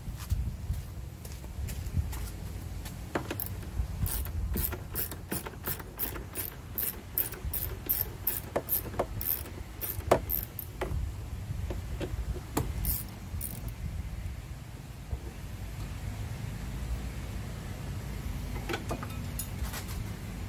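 Socket ratchet clicking as a bolt is backed out: a run of quick, evenly spaced clicks, about three a second, then a few scattered clicks and knocks.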